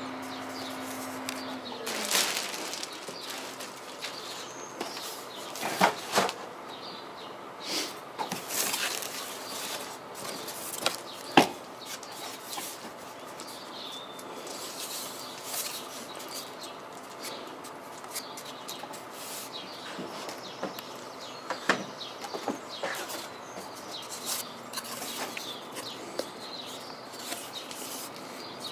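Plastic wrapping and packing around a foam radio-control model aircraft rustling and crinkling as its parts are handled and lifted out of the box, with irregular sharp crinkles and light taps.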